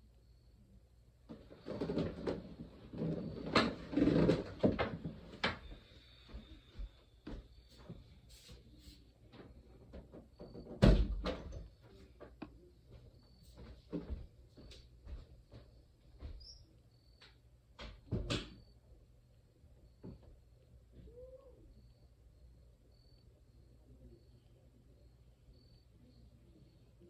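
Irregular household knocks, bumps and clicks. A busy cluster of rustling and knocking comes in the first few seconds, then scattered single knocks, the loudest a thump about eleven seconds in and another near eighteen seconds, with the sounds dying away in the last few seconds.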